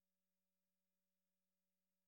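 Near silence, with only an extremely faint steady low hum.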